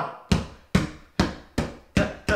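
A ball bounced on carpet with alternating hands: about five dull thumps, a little over two a second.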